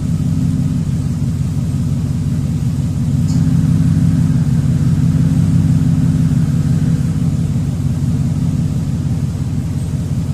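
A Ford F-150's 5.4 L Triton V8 idling: a steady low hum, a little louder from about three seconds in.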